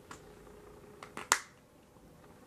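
Small clicks from a plastic hair-product bottle being handled as product is dispensed: a faint click at the start, then three quick clicks about a second in, the last the loudest.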